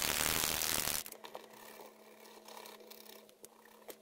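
A loud rustling burst lasting about a second as a hand sweeps a paint marker past, then only faint scattered taps and clicks of marker handling.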